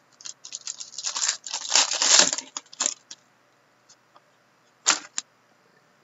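Trading cards being handled and slid against one another: a rapid run of clicks and scrapes that builds about a second in and fades out, then two sharp clicks near the end.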